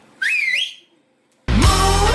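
A short whistle that rises, dips and rises again. After a brief silence, loud music with a heavy bass beat cuts in abruptly.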